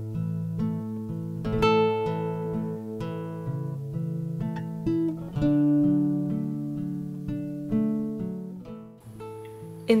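Background music: a plucked acoustic-guitar tune of single notes and chords, made in GarageBand. A woman's voice starts speaking at the very end.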